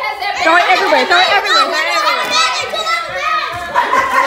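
A group of young children talking and shouting over one another, excited crowd chatter of kids.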